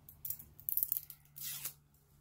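A lipstick's retail packaging being torn open by hand: three short rustling tears in quick succession.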